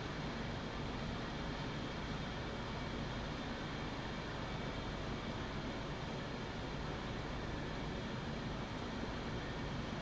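A steady, even rushing noise with a low rumble underneath, unchanging throughout, with no distinct events.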